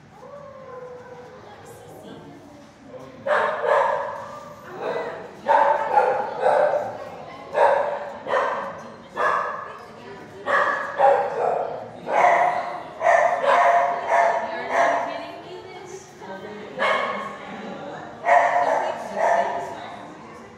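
Dogs in shelter kennels barking: short, sharp barks about once a second, starting a few seconds in, with a brief pause near the end.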